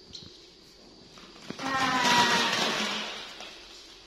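Plastic ball-pit balls poured from a stainless steel colander into a mesh playpen: a clattering rush that starts about one and a half seconds in, is loudest for about a second, and tails off.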